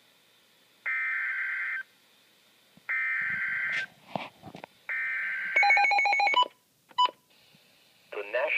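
NOAA Weather Radio SAME data header from a Midland weather alert radio: three buzzy one-second digital bursts about two seconds apart, which mark the start of a new warning message. A fast run of electronic beeps follows as the loudest part, then one short beep near the end.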